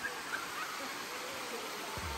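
Steady rush of a stream cascading over rocks far below, with a few faint short chirps near the start.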